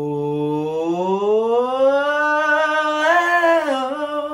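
A man's sustained sung vowel demonstrating low to high pitch. He holds a low note, glides smoothly up to a higher one and holds it, with a small dip at the end. It shows the larynx carrying the voice from a low note to a high one.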